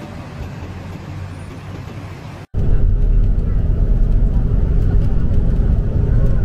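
Traffic noise at a bus stop, then, after an abrupt cut about 2.5 s in, a loud steady low rumble of a moving bus.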